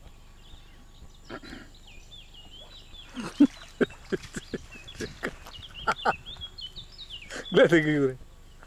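Voices of people talking out of shot in short, scattered bursts, one louder just before the end, with a bird singing in a thin, wavering high line through the middle.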